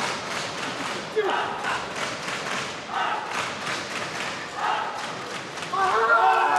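Arena crowd chanting in a repeated rhythm, a shout about every second and a half, over steady crowd noise, with a single sharp thud about a second in.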